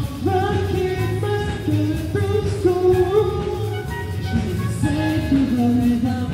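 Live band playing an up-tempo pop song, keyboards and keytar under a sung melody of held and gliding notes.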